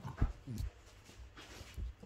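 French bulldog giving short low grunts while play-fighting with a hand: two close together just after the start, the second falling in pitch, and a fainter one near the end.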